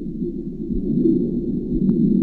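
Underwater ambience picked up through a submerged camera: a steady low rumble of water with a faint steady high whine, and one short click near the end.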